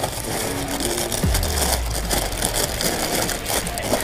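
Plastic bags crinkling and rustling as small parcels are handled, with a low hum underneath.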